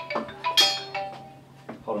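Mobile phone ringing with a marimba-style ringtone, a short run of bright mallet-like notes, with a clinking strike about half a second in.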